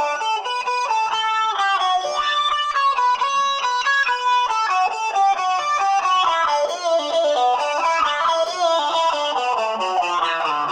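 Electric guitar lead solo played through a Banshee talk box: the sound comes up a tube into the player's mouth and is shaped into vowel sounds, picked up by a microphone, so the melody sounds like it is talking. Quick runs of notes give way to longer held and sliding notes in the second half.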